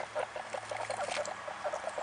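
Guinea pigs making quick, repeated short squeaks.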